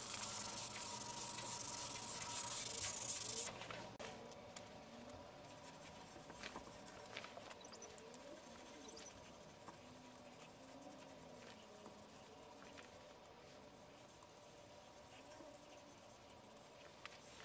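Hand sanding an oiled merbau drawer front along the grain with 320-grit sandpaper between coats of oil: a steady hiss of paper rubbing on wood for about three and a half seconds, which then stops suddenly. After that only faint, quiet handling sounds remain, with one sharp click just after the sanding stops.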